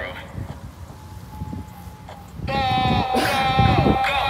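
Low rumbling wind noise on the phone's microphone. About two and a half seconds in, a man's voice breaks in with a loud, long held note, sung or yelled.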